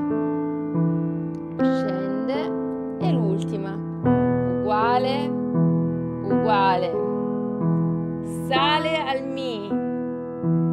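Acoustic piano playing a slow, gentle broken-chord piece with the sustain pedal, the notes ringing on into one another and the chord changing every one to two seconds, the pedal changed with each new chord.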